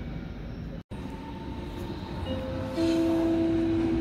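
Railway noise on a station platform: a low rumble, then from about two seconds in a steady whine of several tones that grows louder near three seconds. The sound cuts out briefly about a second in.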